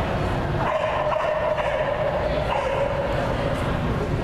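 A dog barking while it runs an agility course, over a steady tone and a low rumble from the arena.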